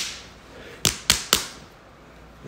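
Sharp hand claps: one at the start, then three quick ones about a quarter second apart near the middle.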